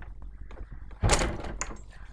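A sudden loud thump with a scraping rush about a second in, fading within about half a second.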